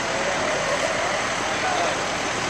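Emergency vehicles, including a fire engine, running nearby: a steady rushing noise of engines and traffic, with faint voices in the background.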